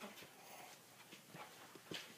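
Near silence: quiet meeting-room tone with a few faint, scattered taps and ticks.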